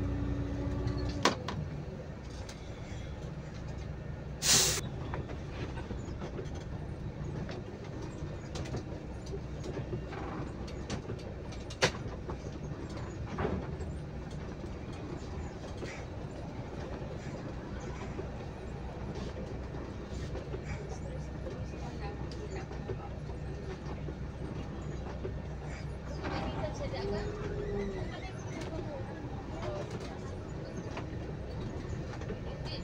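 Diesel bus engine running steadily as the bus pulls away and drives on, heard from the driver's seat. A short sharp hiss about four seconds in and a couple of sharp clicks stand out over the rumble.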